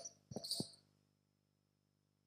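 Near silence: room tone with a faint steady high-pitched whine, after a brief faint sound about half a second in.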